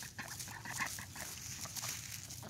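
Faint, scattered soft rustles and short calls from a dog and a small group of domestic ducks on dry leaf litter.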